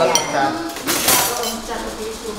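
Metal serving tongs and spoons clinking against a stainless steel tray and ceramic plates: a sharp clink just after the start, then a louder ringing clatter about a second in.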